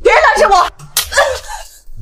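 A woman's shouted voice, then one sharp slap of a hand on a face about a second in, followed by more of her voice.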